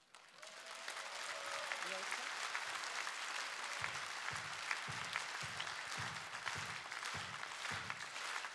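Concert-hall audience applauding at the end of a song. From about four seconds in, a steady beat of about two a second runs through the clapping, as the crowd falls into rhythmic clapping in unison.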